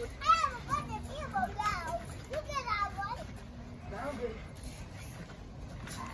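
Children's high-pitched voices shouting and squealing at play, in a flurry of calls over the first three seconds and another about four seconds in.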